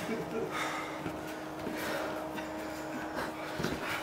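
Quiet room with faint voices and a steady low hum, and a few soft knocks near the end.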